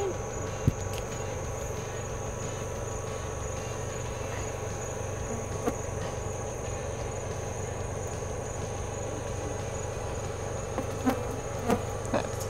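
Steady chorus of night insects: a continuous high trill with a lower buzzing hum beneath it. There are a couple of soft knocks, one about a second in and one near the middle.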